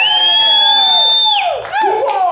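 Audience cheering at the end of a live song. A loud, high whistle slides up in pitch, holds for about a second and a half, then drops off, with a voice whooping under it and shorter whoops just after.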